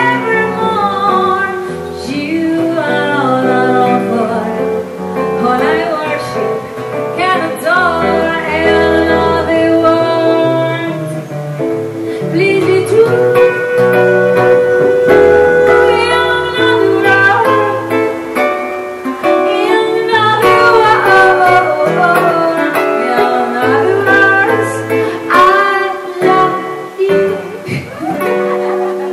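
A woman singing a song into a microphone, accompanied by a guitarist plucking an amplified guitar, performed live.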